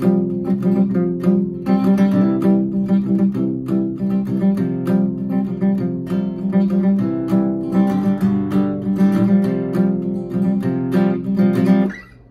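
Mahogany acoustic guitar strummed in a steady rhythm, changing between open chords, and cut off sharply at the end.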